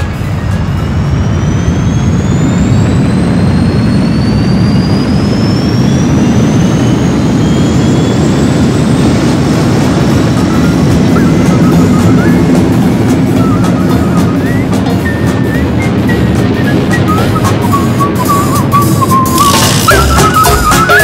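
Flying sound effect: a steady jet-like rushing roar with a thin whine that rises slowly in pitch over the first half, and faint wavering tones coming in during the second half.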